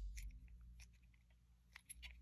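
Faint, brief plastic clicks and ticks from handling the lens and housing of a truck door courtesy light: several in the first second, a near-silent gap, then a couple more near the end.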